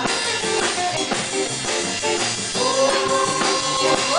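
A live jazz band jamming, with electric bass and drum kit playing a steady groove. A long held note comes in past the middle.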